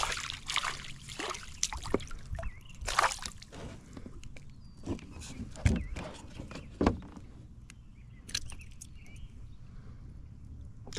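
A hooked sunfish splashing and thrashing at the water's surface in the first few seconds. This is followed by a few sharp knocks as the fish is lifted on the line over the kayak.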